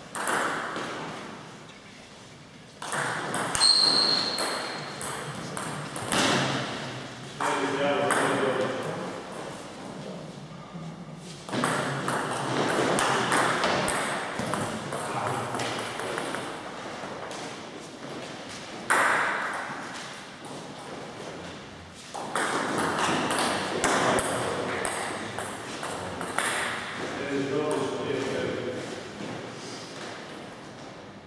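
Table tennis ball clicking back and forth off the bats and the table in a run of rallies, with short pauses between points.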